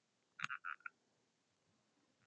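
Faint click of a handheld presentation remote pressed to advance the slide, about half a second in, followed straight away by three brief faint chirps.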